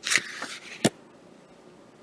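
A page of a picture book turned by hand: a short papery rustle, then a sharp flick just under a second in.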